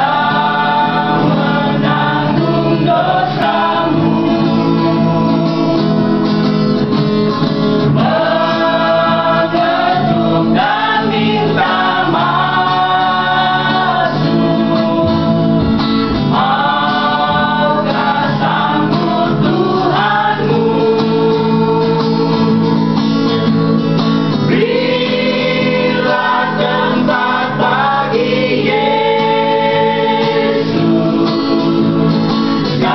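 A small mixed choir of men and women singing a gospel hymn together, phrase after phrase with held notes.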